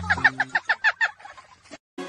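A rapid cackle: a quick run of short, falling notes, about ten a second, that fades away and stops shortly before the end.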